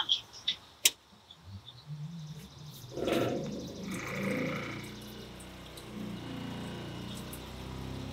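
Water running from a kitchen faucet into a stainless steel sink while the RV's fresh-water pump hums steadily. A single click comes about a second in, and the pump hum builds from about a second and a half in.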